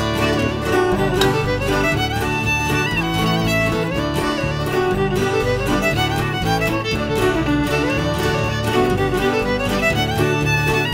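A fiddle reel played with string accompaniment at a steady beat.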